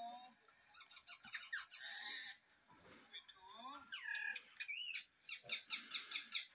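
Rose-ringed (Indian ringneck) parakeet chattering: a run of quick chirps, then several squeaky calls that rise and fall in pitch in the second half.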